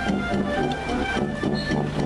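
Italian town wind band playing a tune over a steady, quick beat.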